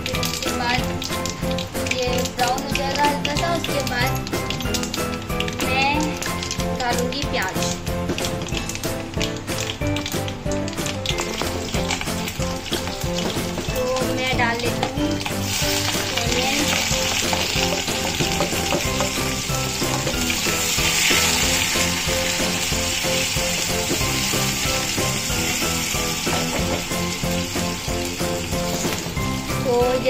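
Mustard seeds and chana dal crackling in hot oil in an aluminium kadhai. About halfway through, chopped onions go into the oil and a dense steady sizzle takes over. Background music plays underneath throughout.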